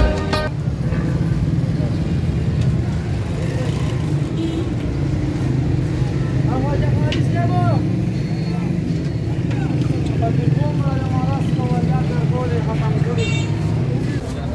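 Roadside traffic noise with a steady low engine rumble throughout, and men's voices talking at intervals in the second half. Background music cuts off about half a second in.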